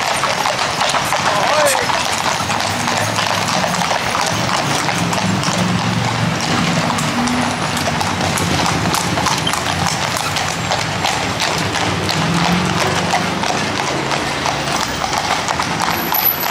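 Hooves of several horses pulling two-wheeled sulkies clip-clopping on an asphalt road, a steady overlapping run of strikes as they pass one after another.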